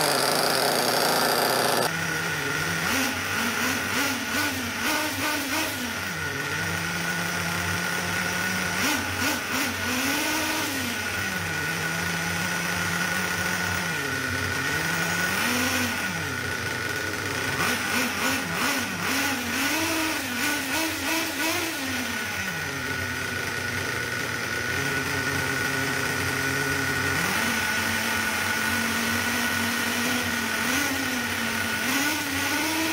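4.8cc two-stroke nitro glow engine of an FS Racing 31801 1/8-scale monster truck running with its wheels off the ground. It idles with repeated throttle blips that send the revs up and back down several times, then settles to a steady idle near the end. A different steady drone fills the first two seconds.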